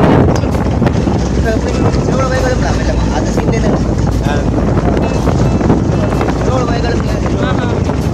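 Wind buffeting the microphone aboard a moving boat, over a steady rumble of the boat's engine and the water, with faint voices in the background.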